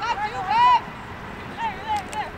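Players' shouts and calls on the field: several short, high-pitched yells, each rising and falling in pitch, over steady outdoor background noise.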